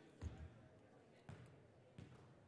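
Basketball bouncing on a hardwood gym floor: two thuds about a second apart, the first the louder.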